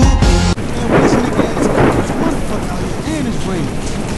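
A hip hop track cuts off suddenly about half a second in. It gives way to a loud, steady noisy rumble like rain and thunder, with faint wavering tones in it.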